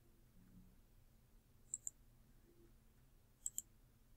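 Computer mouse button clicked twice, about two seconds apart. Each click is a quick pair of sharp ticks, press then release, over near silence.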